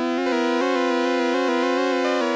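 Rob Papen Predator software synthesizer holding a single note while its pitch-mod LFO, set to a sample-and-hold wave, nudges the pitch in small random steps several times a second. The modulation depth is too shallow for the strong random-pitch retro effect, so it only wavers slightly.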